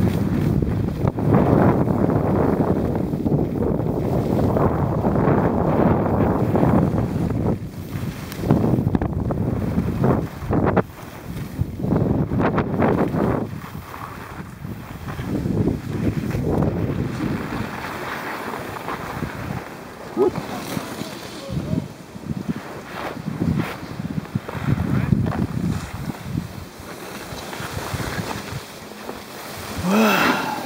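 Wind rumbling and buffeting on the microphone of a camera carried down a ski slope at riding speed, together with the hiss and scrape of snowboards sliding on snow. It rises and falls in gusts and is louder in the first half.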